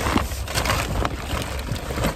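Wind blowing across the microphone: a steady low rumble and hiss with a few short knocks and rustles.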